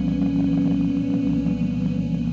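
A steady low drone of held tones, unchanging, with faint scattered ticks.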